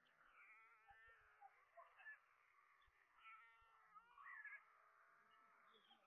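Faint mewing, cat-like begging calls of white stork chicks crowding an adult at the nest, in short wavering bursts, with a few soft low thumps.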